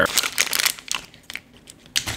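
Crinkling, crunchy sounds of a snack being handled or eaten. The crackle is dense for about the first second, then thins to a few scattered clicks.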